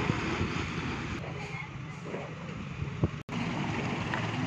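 Wind blowing on the microphone: a steady rushing rumble that cuts out for a moment a little after three seconds in.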